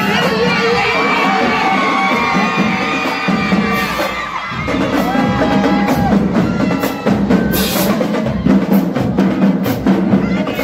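A large crowd cheering and shouting, with a marching drumline's snare and bass drums coming in with sharp, repeated strokes about halfway through.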